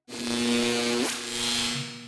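A loud electronic buzz with a steady low hum, starting abruptly, its pitch bending up briefly about halfway through, then fading near the end; a segue effect between the sponsor break and the interview.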